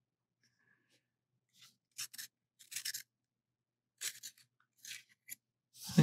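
A freshly sharpened wooden pencil making short, dry scraping strokes, about six of them with pauses between.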